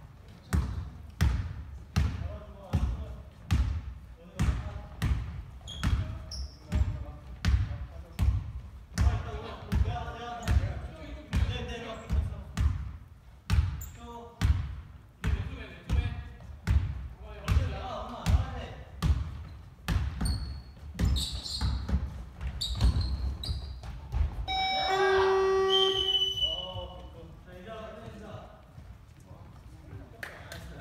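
Basketball being dribbled on a hardwood gym floor, a steady run of bounces a bit under two a second that stops about two thirds of the way in. Players' voices carry in the echoing hall, and near the end a loud steady tone sounds for about two seconds.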